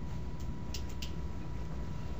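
Room tone of a small classroom: a steady low hum, with two or three short faint clicks about a second in.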